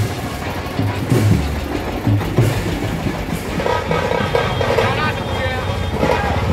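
A tractor engine runs with a low steady rumble amid crowd voices. About three and a half seconds in, a marching brass band with trumpets and a large bass horn starts playing.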